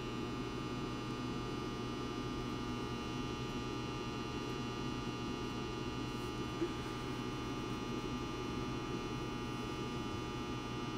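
Steady electrical mains hum with a buzz, unchanging throughout, with a single short click about six and a half seconds in.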